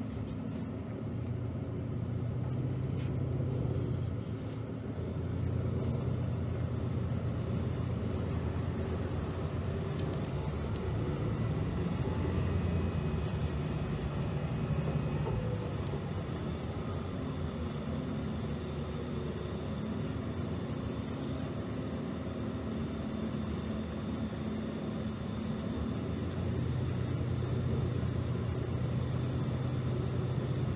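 Cabin sound of a New Flyer DE60LFR diesel-electric hybrid articulated bus under way: a steady low drone of drivetrain and road noise, with the engine note swelling and easing several times as the bus moves.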